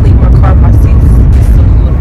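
Inside a moving car: a loud, steady low rumble of road and engine noise, with a voice faintly heard over it.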